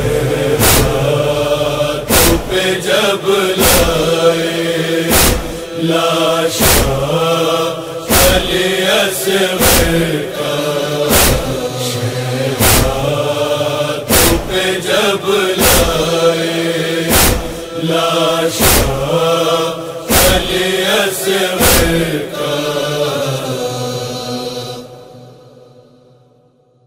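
Male voices chanting the closing refrain of a noha, a Shia lament for Ali Asghar, over a heavy beat about every second and a half in the manner of matam (rhythmic chest-beating). The whole fades out near the end.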